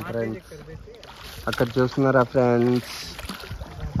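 A man talking in short phrases, with soft water sounds around a paddled coracle in the quieter gaps.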